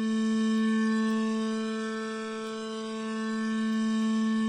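Logic Pro X Sculpture modelled-string synthesizer on its 'Ambient Slow Bow' patch, holding one bowed note at a steady pitch with a rich stack of overtones. Its level slowly swells and eases as the Modulator's LFO moves the mass object on the string.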